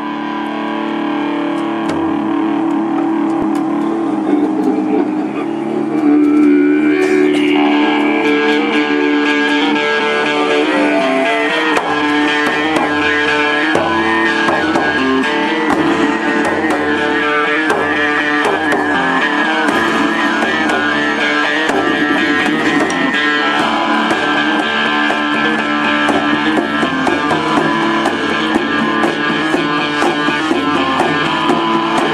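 Live band playing an instrumental opening on accordion and electric guitar, with hand drums (djembe and frame drum) in the group. The sound grows fuller about six seconds in, and a low beat joins about twelve seconds in.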